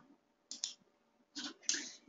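Computer mouse clicking, a few short clicks in quick pairs.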